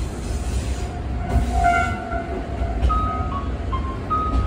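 Diesel railcar running, a steady low rumble heard from inside the cabin. From about a second in, a melody of short clear notes starts up faintly over it.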